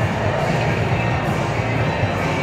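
Background music playing over the steady hubbub of a busy restaurant dining room.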